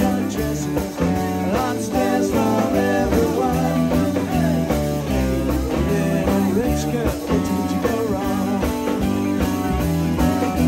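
Live rock band playing: drums, bass and electric guitar, with a lead melody that bends up and down over a steady beat.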